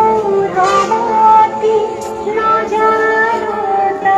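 A devotional song sung by high voices with instrumental accompaniment, long notes held and moving smoothly from one to the next.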